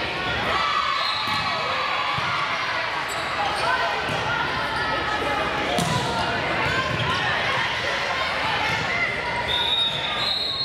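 Volleyball rally in a large gym: players calling and spectators talking over one another, with the slaps and thuds of the ball being hit. Near the end a referee's whistle blows one held high note.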